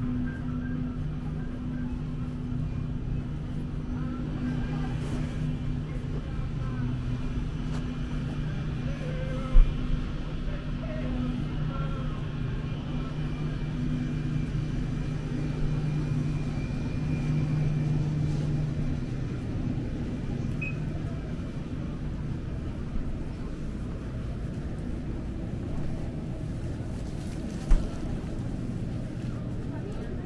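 Supermarket interior ambience: a steady low hum with faint shoppers' voices and quiet background music. Two brief low thumps come about ten seconds in and again near the end.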